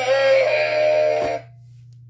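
Tommy Trout animatronic singing fish toy playing its song through its built-in speaker, a thin synthetic-sounding voice over guitar, which stops abruptly about a second and a half in with a click. After that only a steady low hum remains.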